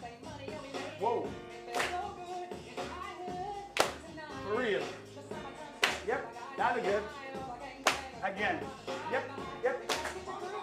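A group's sharp hand claps, one about every two seconds, marking the end of each grapevine step. Upbeat backing music with a sung melody plays under them.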